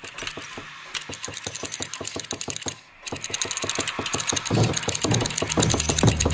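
Fast, evenly repeating pulse from the film's soundtrack, about ten sharp strokes a second, like a rattling motor. It drops out briefly near the middle, then returns louder.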